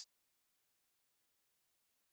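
Near silence: a pause between sentences, likely with noise gating on the microphone.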